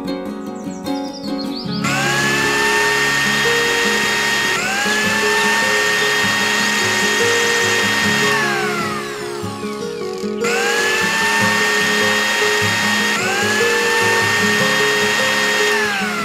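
A miniature electric blender's small motor whining as it blends. It spins up with a rising whine about two seconds in, runs steadily, and winds down with a falling whine past the middle. It starts again about ten seconds in and winds down again at the end. Background music plays throughout.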